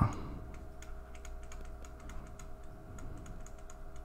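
Faint, sparse light clicks as letters are written stroke by stroke with a pen on a digital whiteboard, over a steady low hum.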